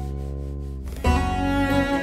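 Instrumental world-music ensemble: a held low note fades for about a second, then the ensemble comes back in louder, with cello to the fore.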